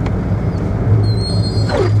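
Car engine running with a steady low hum and road noise, heard from inside the cabin while driving slowly. A faint thin high whine comes in about a second in.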